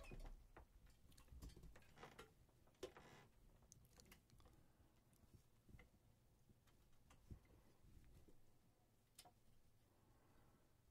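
Near silence: quiet room tone with faint rustling and a few soft, isolated clicks.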